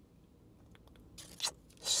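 Faint paper rustle of a wrapper being torn and slid off a drinking straw: a few light ticks, then a short tearing rustle a little past halfway.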